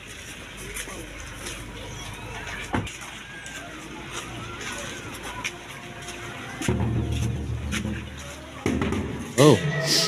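Street ambience with faint voices and a vehicle's low hum. About seven seconds in, steady low-pitched music begins and grows louder near the end.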